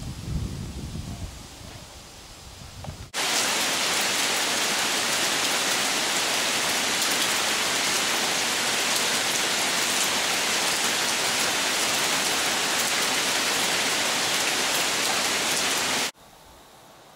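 Wind gusting against the microphone for about three seconds. Then a sudden cut to a steady downpour of heavy rain falling on the lake and trees, a loud, even hiss.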